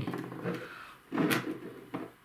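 Steel muzzle devices (AK and AR-15 flash hiders) being set down and moved about on a tabletop, with a sharp knock about a second in.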